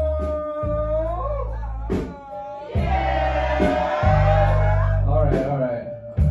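A singer holding long, wavering notes over a live band's deep bass notes.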